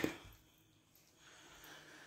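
Quiet room tone: the end of a spoken word at the very start, then only a faint soft rustle in the second half.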